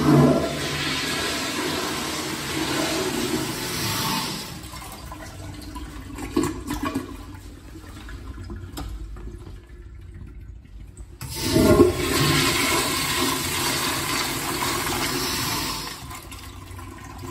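Two flushometer flushes in a tiled washroom. A 2010s American Standard Trimbrook urinal flushes with a rush of water lasting about four seconds. About eleven seconds in, a 1991 American Standard Afwall 5-gallon-per-flush wall-hung toilet's flush valve opens with a loud burst, and water swirls down the bowl until the end.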